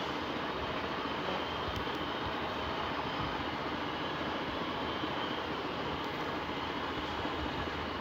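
Steady outdoor rushing noise with no clear events, of the kind made by distant road traffic or wind over a phone microphone.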